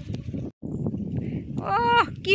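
Irregular rustling and footfalls on a dirt path strewn with dry leaves, cut off abruptly about half a second in, then more handling noise; near the end a high-pitched voice calls out, the loudest sound.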